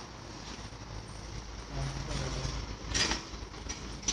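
Steady low rumble of outdoor street noise, with a brief low hum about two seconds in and a short scuffing noise near three seconds.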